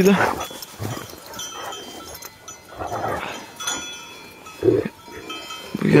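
Flock of sheep: scattered bleats over the light, steady ringing of sheep bells.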